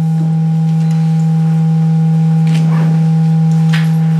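Loud, steady electronic drone: one low pure tone held without change, with two fainter, higher steady tones above it. A few faint, brief noises come through about two and a half and three and a half seconds in.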